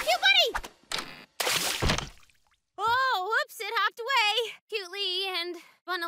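High-pitched wordless cartoon vocalizing in short runs with a wavering, sliding pitch, starting about three seconds in, preceded by a brief noisy sound-effect burst.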